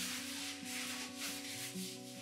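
Rustling of a nylon puffer jacket as the wearer moves and turns, over soft background music with held notes.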